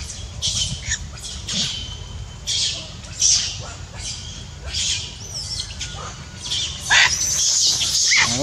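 Short, high animal chirps repeating roughly once a second, then a louder, shrill macaque screech starting about seven seconds in.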